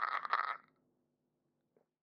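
A person's loud, rapidly pulsing laugh that stops abruptly about half a second in.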